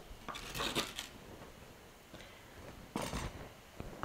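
Faint scratchy scraping of a spoon working the seeds and stringy pulp out of the inside of a raw, peeled spaghetti squash ring, in two short bouts, with a sharp click just before the end.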